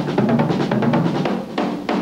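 Drum kit played in a fast, dense run of strokes across snare and toms, with bass drum and cymbals mixed in.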